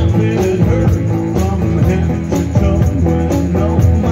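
Live country-rock band music: electric and acoustic guitars over a drum kit keeping a steady beat, with no clear vocal in this passage.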